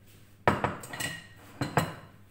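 Cutlery and dishes clattering: a cluster of sharp clinks about half a second in and two more near the end.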